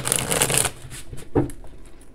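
A deck of oracle cards being shuffled by hand: a dense rustle of cards in the first half second or so, then a few lighter flicks and a tap about one and a half seconds in.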